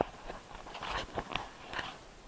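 Handling noise: fingers rubbing and tapping on the camera body near the microphone, a run of short, irregular crackles and taps.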